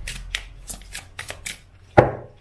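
Oracle cards being shuffled by hand: a run of quick, irregular card clicks, with one sharper, louder click at the very end.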